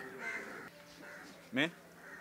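A crow calling faintly in a lull between lines of speech. Near the end comes a single short voiced syllable.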